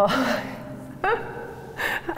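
A woman gasping in surprised laughter, with two breathy bursts about a second apart.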